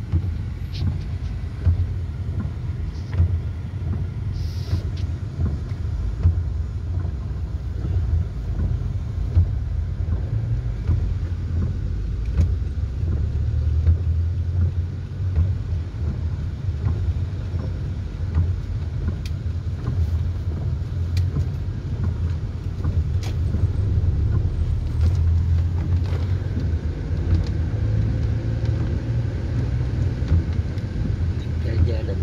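Steady low rumble of a car driving on wet roads, heard from inside the cabin, with a few faint ticks now and then.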